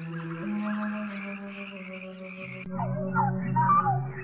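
Orchestral cartoon score playing soft held chords. From a little past halfway, warbling, gliding calls rise and fall over the music.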